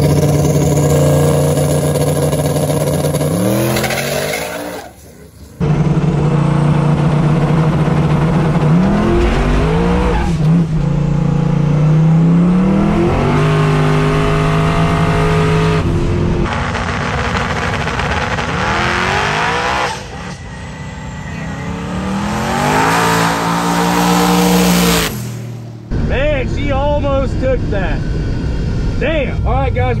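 Twin-turbo engine of a first-generation Chevrolet Camaro drag car at full throttle on a drag-strip pass. Its pitch climbs in several long sweeps, each breaking off and starting low again.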